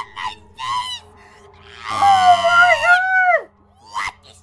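High-pitched, sped-up cartoon character voice: a few short squeaky syllables, then about two seconds in a loud, wavering shriek lasting about a second and a half.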